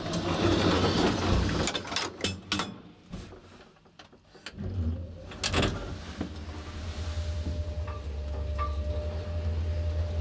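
ASEA traction elevator: clatter and clicks as the car door and folding gate are handled, then about five seconds in the hoist machine starts and the car travels with a steady low hum.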